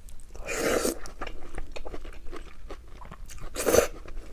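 A person eating a mouthful of noodles and enoki mushrooms close to the microphone: a loud slurp about half a second in, then wet chewing with many small clicks, and a second slurp near the end.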